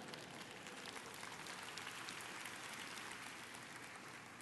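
Congregation applauding, faint, swelling a little and then fading near the end.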